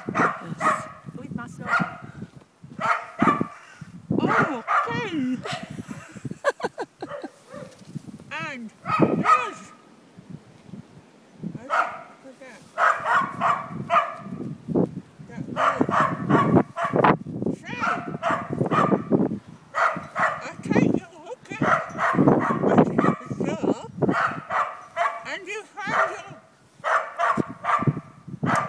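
Kennel dogs barking on and off, with a thin wavering pitched call about seven to nine seconds in.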